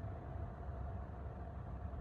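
Faint steady background noise: a low rumble and hiss with a thin steady hum, and no distinct events.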